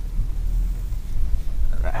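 Low, steady rumble of a car heard from inside the cabin as it creeps into a parking space.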